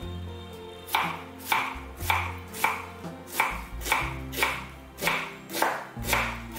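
Kitchen knife slicing an onion on a wooden cutting board: a regular series of knife strikes through the onion onto the board, about two a second, starting about a second in.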